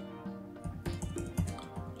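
Typing on a computer keyboard: a quick run of short key clicks, over steady background music.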